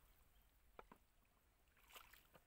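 Faint splashing and sloshing of legs and feet wading through shallow muddy water, with two small splashes about a second in and a soft swish near the end.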